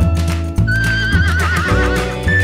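Background music with a steady bass line. Partway through, a horse's long, quavering whinny sounds over it.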